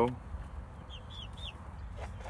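Chickens calling faintly: three short, high, falling notes about a second in, over a low rumble.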